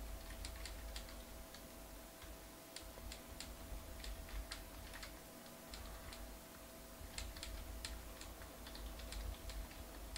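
Faint typing on a computer keyboard: irregular runs of keystroke clicks over a steady low hum.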